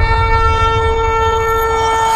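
A long horn blast held on one steady pitch over a low rumble.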